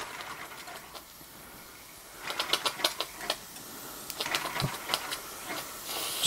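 Small toy steam engine giving irregular light clicks and ticks, starting about two seconds in. It is being coaxed to start on steam and is not yet running steadily.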